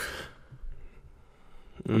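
A man's voice: the end of a spoken word that fades out, then a short closed-mouth "mm" near the end, with quiet room tone between.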